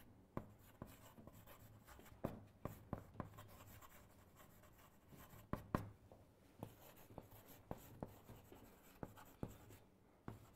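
Faint handwriting: irregular small taps and short scratches as a definition is written out word by word.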